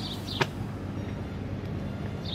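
A steady low mechanical hum, with a single sharp click about half a second in.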